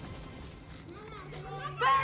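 A woman's high-pitched, sing-song chanting voice starts about a second in and grows louder toward the end, after a quiet first second.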